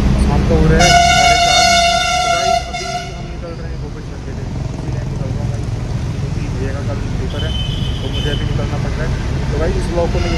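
A vehicle horn sounds once, about a second in, for about a second and a half, over a Hindi rap song with vocals and a heavy bass line.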